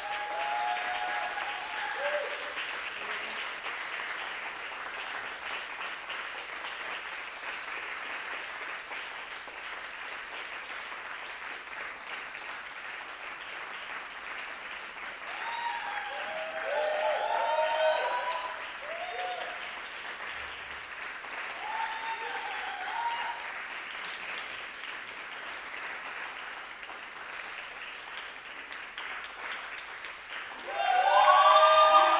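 Steady applause from a small audience, with voices calling out over it near the start and twice more, loudest in the middle.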